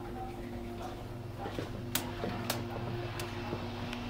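A steady low electrical or mechanical hum, with a few sharp clicks and knocks in the middle.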